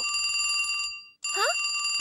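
Cartoon sound effect of a telephone-style bell ringing fast, signalling an incoming call at the control console. It rings twice, each ring about a second long, with a short break between.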